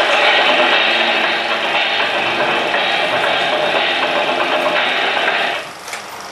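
Steady, loud rasping noise from the soundtrack of an old 16 mm film print, with no speech. It drops sharply near the end.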